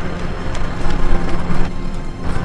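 Steady background hiss and low hum with faint held tones, a mix of location noise and a soft music bed.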